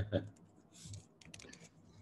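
A laugh trails off at the start, followed by a quiet breath and then a quick run of light clicks, like typing on a computer keyboard.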